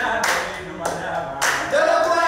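A group singing a cappella and clapping their hands on a steady beat, a clap a little more than every half second. The voices drop out in the middle and come back in near the end.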